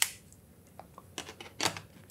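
Clicks and small scrapes of a Canon lens and macro extension tube being twisted onto a Canon EOS DSLR's bayonet mount: a handful of separate clicks, the sharpest near the end as it locks.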